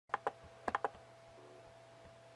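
Laptop keys clicking under the fingers: two taps, then three more in quick succession, within the first second. After that only a faint steady electrical hum.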